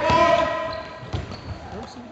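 A drawn-out shout from spectators fades in the first half-second, followed by a few thuds of a futsal ball being kicked and bouncing on the wooden floor, echoing in a large sports hall.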